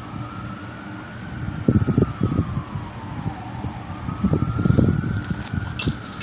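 A siren wailing, its pitch slowly rising and falling about once every four seconds. Twice, short bouts of rough low noise from the two dogs play-wrestling are louder than the siren.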